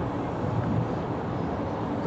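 Steady urban background noise, a low hum of distant street traffic.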